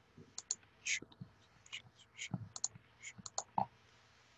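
Irregular short clicks and taps of a computer mouse and keyboard, with a few faint breathy murmurs among them.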